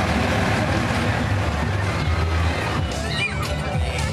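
Parade sound: music and crowd voices over a steady low rumble. From about three seconds in, high gliding calls rise and fall above it.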